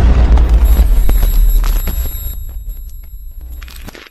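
Cinematic logo-intro sound effect: a deep boom at the start whose rumble slowly fades away, with sharp high ticks and thin high shimmering tones laid over it.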